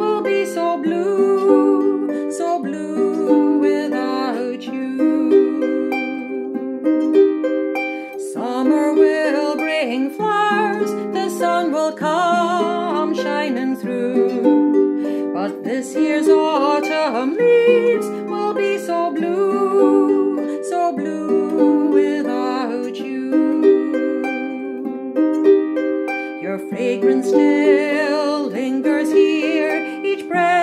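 A woman singing a slow song, accompanying herself on a clarsach (Scottish lever harp) with sustained plucked notes under the voice.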